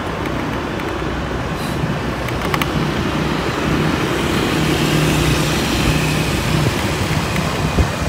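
Steady road and wind noise from riding along a road, with a low engine hum that gets a little louder in the second half. There are a couple of faint clicks about two seconds in.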